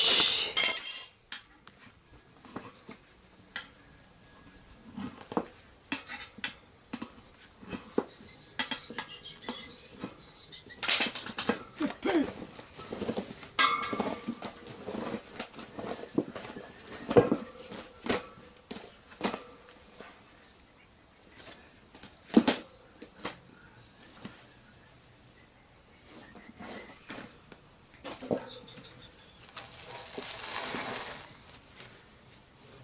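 Steel tyre levers clinking and knocking against the spoked rim of a Honda CB750's front wheel as the tyre and inner tube are worked off by hand: scattered sharp metal clinks, with a loud clatter about a second in, a busier stretch around the middle and a few single hard knocks.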